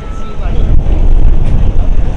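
Wind buffeting the microphone: a loud, uneven low rumble, with faint voices underneath.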